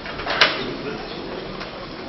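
Indistinct murmur of voices and hiss in a hall with no music playing, broken by one sharp click about half a second in.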